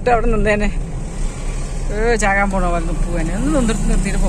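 Car engine and road noise heard from inside the cabin while driving in town traffic, a steady low drone. A high-pitched voice speaks short words over it, saying "mango" near the end.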